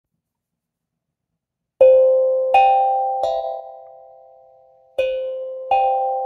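A bell-like three-note chime, each note struck and ringing away, sounds about two seconds in and then starts again about a second and a half later.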